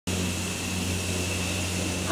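A steady mechanical hum with a low drone and a thin high whine above it, unchanging throughout.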